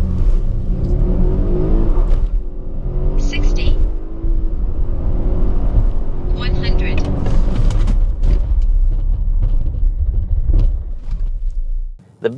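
Volvo XC90 T8 plug-in hybrid's four-cylinder petrol engine heard from inside the cabin under full-throttle acceleration from a near standstill. Its pitch climbs, drops at an upshift about four seconds in, and climbs again until about seven seconds in. It then settles into a steady cruise with a low road rumble.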